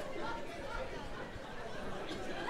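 Indistinct chatter of several overlapping voices from a comedy-club audience, lower than the comedian's speech around it.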